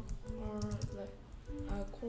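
Typing on a computer keyboard: a quick run of keystroke clicks, with background music holding steady notes underneath.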